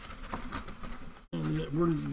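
Faint rustling and light knocks of a cardboard box of wax card packs being handled. About a second in the sound cuts out briefly, then a man starts speaking.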